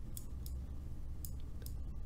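A few faint clicks of a computer mouse as Serum's EQ knobs are adjusted, over a low steady hum.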